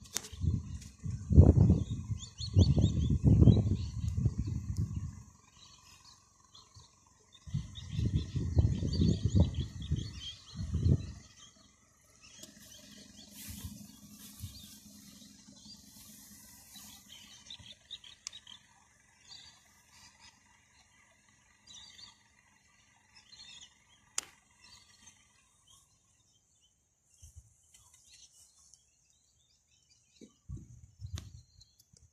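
Small birds chirping and calling in the background, with loud low rumbling on the microphone in two stretches over the first eleven seconds. After that only scattered chirps and a faint steady high whine remain, with one sharp click about 24 seconds in.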